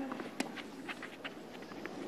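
A tennis ball struck with a racket once, sharp and clear, about half a second in, followed by a few fainter short ticks over a low, steady stadium hush.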